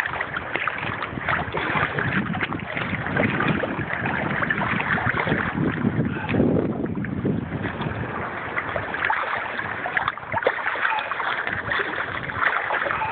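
Small sea waves sloshing and lapping close to the phone's microphone, mixed with wind noise on the microphone, with a stronger rumbling gust about six to seven seconds in.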